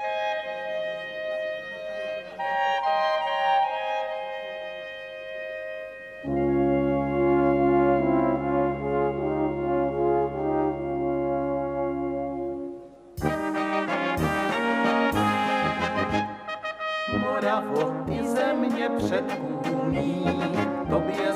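Czech brass band (dechovka) playing the instrumental introduction of a slow song: a soft, held clarinet melody first, then about six seconds in a loud sustained chord over deep tuba bass, and from about thirteen seconds in the full band with a regular rhythmic beat.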